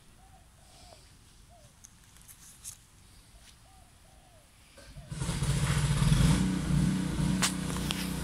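An engine starts up abruptly about five seconds in, loudest a second later, then runs on steadily. Before it, only faint room-level background with a few short chirps.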